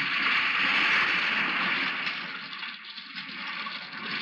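Heavy rain pouring down, a steady hiss that dips slightly near the end.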